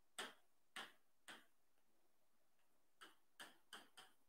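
Faint chalk strokes and taps on a blackboard as numbers are written: short ticks, three in the first second and a half, then a pause, then four in quicker succession near the end.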